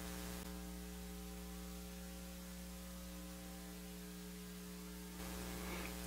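Quiet, steady electrical mains hum with a faint hiss underneath: a low buzz with several unchanging overtones.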